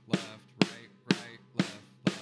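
Drumsticks striking a drum kit in an even pulse of about two strokes a second, four strokes in all, played as double strokes (right, right, left, left). A voice calls the sticking along with the strokes.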